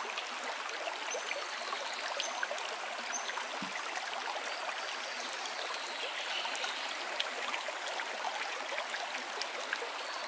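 Shallow rainforest stream running over stones and gravel: a steady rush of flowing water.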